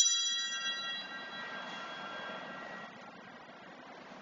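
An altar bell struck once, its several clear high tones ringing on and dying away over about three seconds in a reverberant church. This is the bell rung at the epiclesis, as the priest calls down the Spirit on the bread and wine.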